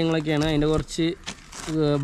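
A man talking in Malayalam, with a brief crinkle of a paper sheet being handled in a short pause a little past halfway through.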